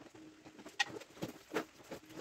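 A few short, sharp clicks and knocks of tile-setting tools and pieces being handled on a tiled concrete counter, over a faint low steady tone.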